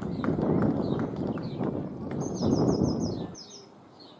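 A loud rushing outdoor noise in two swells that cuts off suddenly near the end. Over it a bird sings short runs of quick, high chirps.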